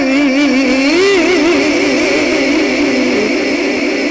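A male qari's voice holding one long, wavering ornamented note in melodic Quran recitation (tajweed), the pitch rippling up and down several times a second and settling slightly lower about three seconds in.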